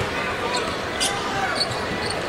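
Basketball arena sound during live play: a basketball being dribbled on the hardwood court over a steady crowd murmur, with a sharp high-pitched strike about a second in.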